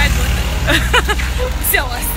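A woman laughs briefly, with a word or two, over a steady low rumble of engine noise from the street.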